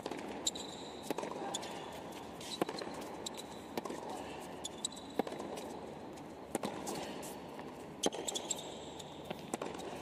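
A tennis rally on a hard court: a sharp racquet-on-ball strike about every one to one and a half seconds as the ball goes back and forth, with short shoe squeaks on the court surface. A steady low murmur runs underneath.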